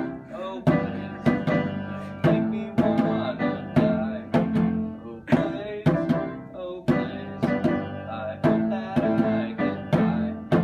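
Live acoustic instrumental music: a djembe hand drum struck in a steady rhythm under sustained chords from an upright piano.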